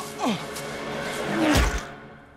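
A man's short grunt, then a swelling rush of noise ending in a heavy low thud about a second and a half in: the sound of a fight blow landing and a body knocked to the ground.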